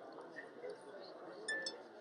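Faint murmur of distant voices in a busy exhibition hall, with two light, glassy clinks about one and a half seconds in.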